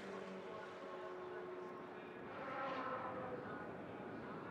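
Open-wheel race car engine running at speed on the oval, a steady high engine note. A louder, higher engine sound swells briefly a little past halfway.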